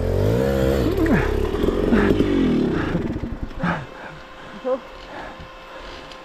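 KTM 300 XC-W two-stroke dirt bike engine revving up and down under load as it works through deep snow, then backing off and going quiet about four seconds in. A short 'oh' near the end.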